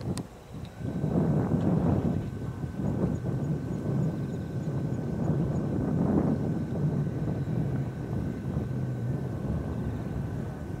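Twin turbofan engines of an Embraer regional jet landing: a steady rumbling noise with a faint high whine, buffeted by wind on the microphone. A sharp click right at the start.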